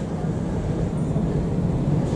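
Steady low rumble of background room noise, with no distinct events.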